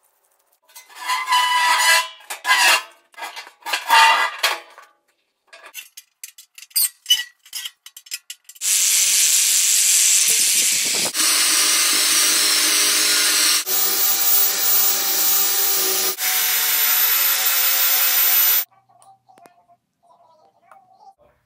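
Angle grinder cutting into the steel lid of an oil barrel: a loud, continuous grinding hiss with a steady whine, broken into several spliced stretches from about nine seconds in until shortly before the end. Before it come a few short rasping bursts of metalwork and some scattered clicks.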